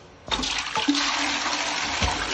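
Caroma toilet flushing: about a third of a second in, a sudden loud rush of water pours into the bowl and keeps running.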